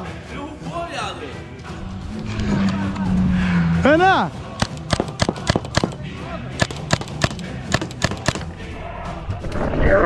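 Paintball marker firing a rapid string of sharp shots, about four a second, for about four seconds starting around the middle.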